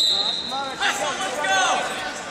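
Wrestling referee's whistle, one steady high blast lasting just under a second, signalling the wrestlers to start. Voices follow.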